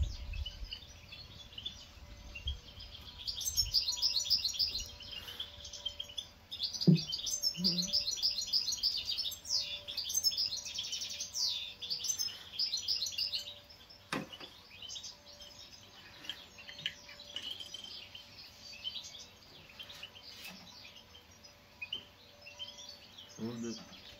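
Birds chirping and twittering in fast runs of short high notes, busiest in the first half and sparser later. There is one sharp click about fourteen seconds in.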